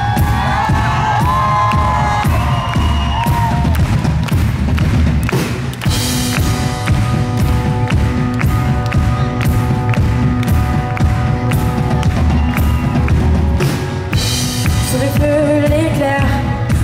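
Live pop band playing a song intro in an arena: a heavy bass beat with sustained keyboard chords. The crowd cheers over the first few seconds.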